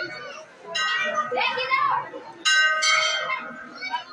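Hanging temple bell struck twice, about a second in and again about two and a half seconds in, the second strike louder, each ringing on and fading over crowd chatter.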